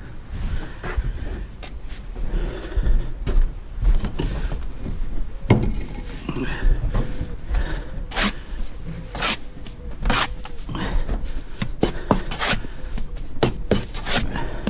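Steel brick trowel scraping, chopping and slapping wet mortar on a mortar board, in irregular strokes with sharp taps that come thicker and louder in the second half.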